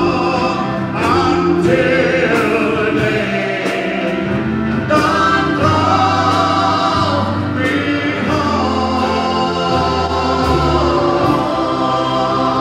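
Live gospel song: several voices singing together with vibrato, backed by bass guitar, drums and keyboard.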